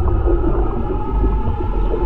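Underwater ambience sound design: a deep, steady low rumble with long held tones and faint wavering moans above it, muffled as if heard below the surface.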